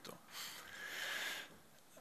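A man drawing a breath in through the nose, a soft hiss lasting about a second, picked up close by a podium microphone.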